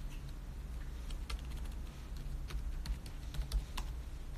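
Light, irregular clicks and taps, like typing or fingers on a hard surface, over a steady low hum.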